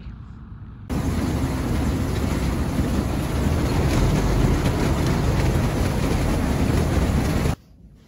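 Carrot harvester running: a loud, dense, steady mechanical din as its sorting conveyor carries the lifted carrots. It cuts in about a second in and stops abruptly near the end.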